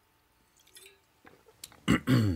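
A person drinking from a water bottle: faint swallowing and small wet mouth clicks, then a sudden loud throat sound near the end as he clears his throat.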